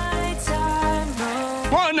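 Background music with a simple melody moving in held, stepwise notes, over the faint sizzle of sugar syrup boiling in a steel saucepan on its way to 130 °C.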